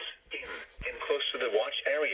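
NOAA Weather Radio broadcast voice reading a tornado watch statement, heard through a Midland weather radio's small speaker.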